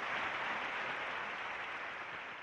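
Large audience applauding, the clapping slowly dying away.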